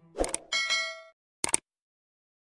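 Subscribe-button animation sound effect: a click, then a short bell-like ding, and a quick double mouse click about a second and a half in.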